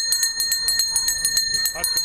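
A school handbell rung by hand, swung rapidly so that it clangs several times a second in a steady, ringing peal, calling children to class.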